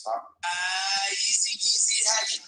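A recorded song starting to play: a sung vocal holds a long note with music, beginning about half a second in.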